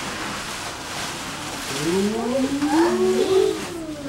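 Paper rustling as a gift bag is unpacked, then about two seconds in several voices join in a long drawn-out 'ooh' that rises and holds for about two seconds.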